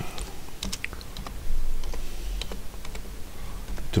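Computer keyboard being typed on: a short run of separate keystrokes at an uneven, hunt-and-peck pace as a few words are entered.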